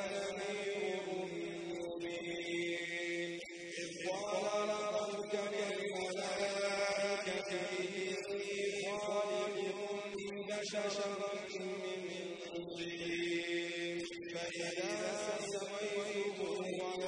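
A man's voice reciting the Quran in a slow melodic chant, holding long, gliding notes with short breaks between phrases.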